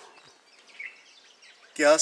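Faint, brief bird chirps over quiet outdoor background noise, the clearest about a second in, followed near the end by a man's voice speaking.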